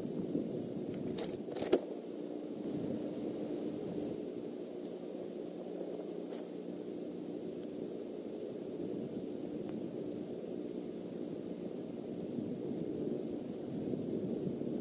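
Steady low hum and rumble of outdoor night background noise on a nest-camera microphone. Two short, sharp scratchy cracks come a little over a second in, the second the loudest, and a fainter one about six seconds in.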